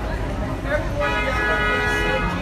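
Car horn sounding one steady, unwavering note for about a second, starting halfway through, over street noise and voices.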